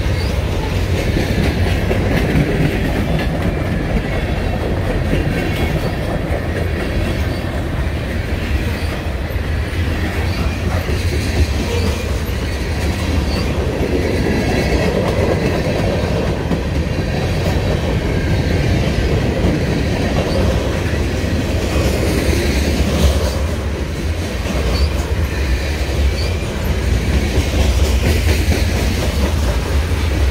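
Freight train's covered hopper cars rolling past close by: a steady, loud rumble of steel wheels on rail with scattered clicks as the cars pass.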